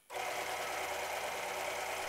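Electric motor of a home-built linear drive turning its threaded rod and driving the carriage, a steady machine hum with a whine made of several tones. It starts abruptly just after the beginning.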